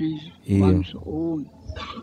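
A man's voice: a short word followed by two drawn-out, hesitant vowel sounds with a pause between them.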